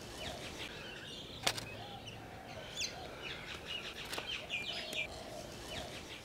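Small birds chirping in short, quick calls, thickest between about three and five seconds in. One sharp click comes about a second and a half in, likely a camera shutter.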